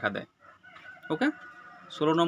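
A faint, drawn-out bird call in the background, with a short spoken word from a man just after a second in.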